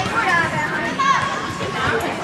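Several raised, high-pitched voices shouting and calling out over one another in a large indoor sports hall.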